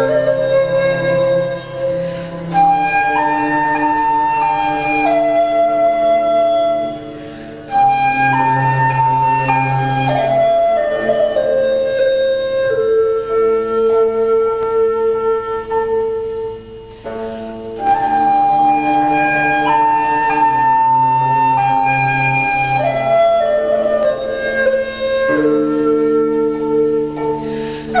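Chinese bamboo flute (dizi) playing a slow melody of long held notes over a low accompaniment, with short breaks between phrases.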